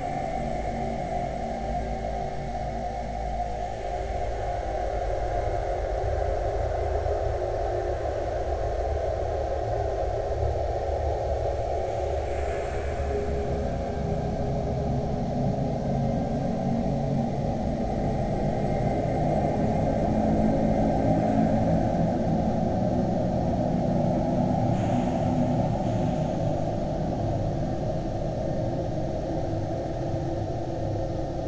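Ambient music built from an old ballroom dance record, slowed and looped under heavy reverb into a muffled, rumbling wash with its sound held low. It thickens about halfway through.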